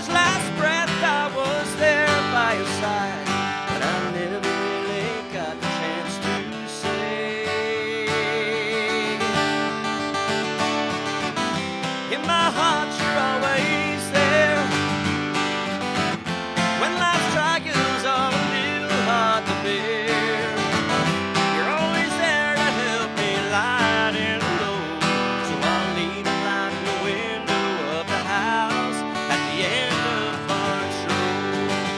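Live solo country performance: a steel-string acoustic guitar strummed steadily while a man sings, his voice wavering with vibrato on held notes.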